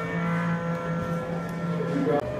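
A steady, pitched drone: one held tone with overtones that stops shortly before the end, over faint room noise.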